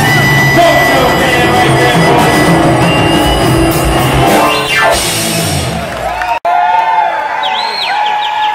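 A live southern rock band with electric guitars and drum kit playing the close of a song, ending in a falling glide. The music stops about six seconds in, and the crowd cheers and whistles.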